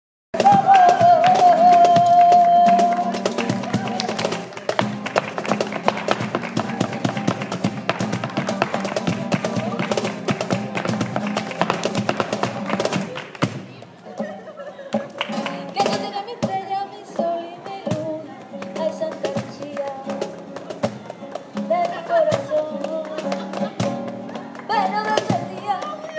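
Live flamenco: a singer's voice opens on a long held note over acoustic guitar and cajón, then rapid zapateado footwork on a portable wooden dance board and hand clapping (palmas) fill the middle with dense sharp strikes. Near the middle it drops quieter, the singing going on with lighter strikes.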